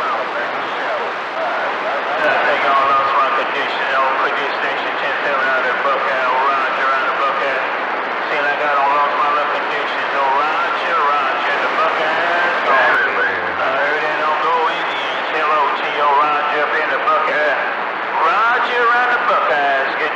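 A man talking over a CB radio on channel 28, heard through the receiver's speaker as a thin voice with a steady hiss of static behind it throughout: a long-distance skip transmission.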